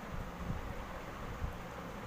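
Faint background noise with an uneven low rumble, like wind on the microphone; no distinct cooking sound stands out.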